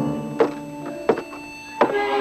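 Footsteps of hard-soled shoes on a wooden boardwalk: slow, even steps, about one every 0.7 seconds, three of them here.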